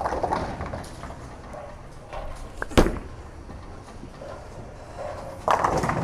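A bowling ball is released onto the lane with a thud and rolls down it with a low rumble. About three seconds in, a single sharp hit sounds as it strikes the pins. Bowling-alley clatter rises again near the end.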